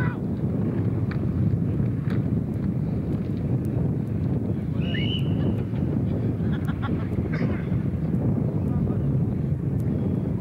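Wind buffeting the camcorder microphone, a steady low rumble that covers the field, with faint distant shouts from the players and a brief high shrill sound about five seconds in.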